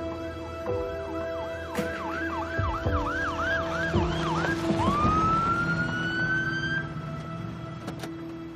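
Ambulance siren in a fast yelp of about three rising sweeps a second. About five seconds in it switches to one long slow rising wail, which fades out before the end.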